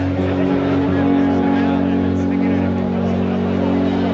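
Live band on stage holding a low, steady drone of sustained amplified notes, the lead-in to a song.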